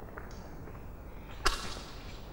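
A single sharp snap about one and a half seconds in, with a short ringing tail, over low room noise.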